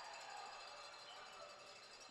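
Near silence: faint, steady background hiss with a few thin high tones, fading slightly.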